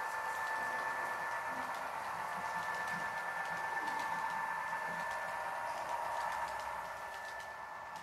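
Model freight train rolling along the layout track: a steady whirring hum of motors and wheels with faint ticking, fading away near the end as the train moves off.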